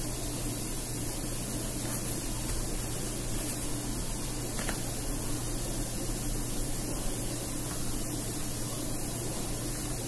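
Steady hiss with a faint low hum, the recording's background noise, with two faint brief ticks about two seconds in and just before the middle.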